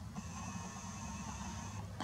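Nikon P900 camera's zoom motor whirring faintly as the lens zooms in. It is a thin, steady whine that starts just after the beginning and stops shortly before the end, over a low hum.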